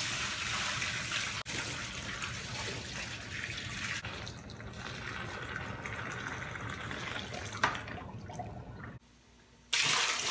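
Hot water poured in a steady stream from a plastic bucket, splashing into a plastic tote of foaming degreaser solution. The sound cuts out completely for a moment near the end, then the pour carries on.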